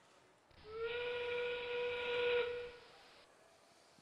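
FRC field's endgame warning sound effect, a steam train whistle held for about two seconds, signalling 30 seconds left in the match and the start of the endgame climb period.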